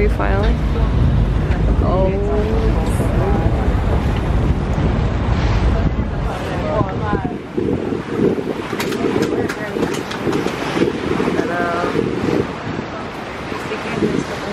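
A passenger ferry's engine drones low and steady under indistinct voices. About halfway through, wind buffets the microphone on the open deck over the rush of the sea.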